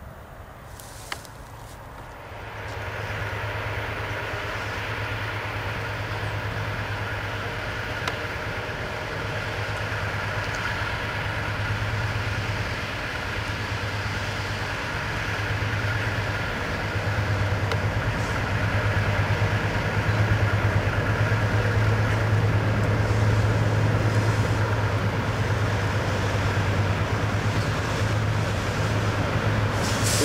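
GE C30 diesel-electric locomotive running under power as the train approaches, a steady low engine drone that sets in about two seconds in and grows gradually louder. Only the lead unit of the three-locomotive consist has its engine running; the two trailing units are shut down.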